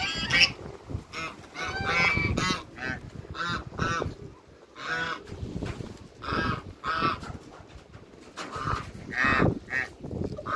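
Barnacle geese calling: a string of short honks, a dozen or so, singly and in quick runs, with brief pauses between.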